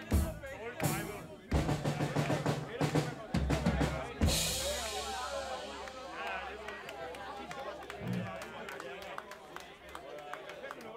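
Live rock drum kit: a run of bass drum, snare and tom hits over the first four seconds, ending on a loud crash cymbal that rings and slowly fades, with voices from the stage and audience underneath.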